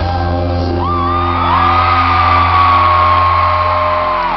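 Live rock band's chord held and ringing out in an arena, with a voice holding one long high note from about a second in, its pitch sagging slightly.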